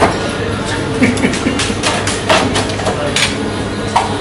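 Busy café background of voices and music over a steady low hum, with several short sharp knocks and clicks scattered through it.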